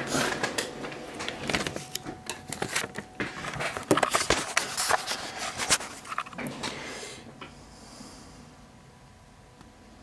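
Handling noise: a dense run of clicks, knocks and rustles as radio gear on the desk is handled and repositioned. It dies down after about six seconds to a faint hiss.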